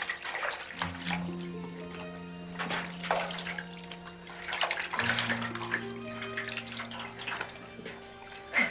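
Hands washing and splashing in a basin of water, with irregular sloshes. Under it, soft music with long held chords that change about a second in and again about five seconds in.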